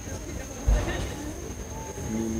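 A single dull thump about two-thirds of a second in, over faint voices in the background and a steady thin high-pitched tone.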